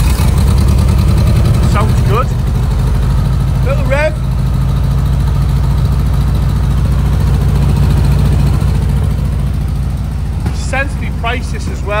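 1978 Volkswagen T2's 1600cc twin-port, twin-carb air-cooled flat-four engine idling steadily, just after being started.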